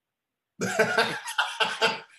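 A man laughing in a quick run of breathy, coughing bursts, starting about half a second in.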